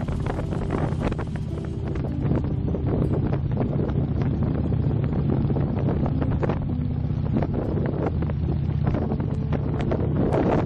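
Wind buffeting the microphone over the steady drone of a motorcycle engine cruising at road speed.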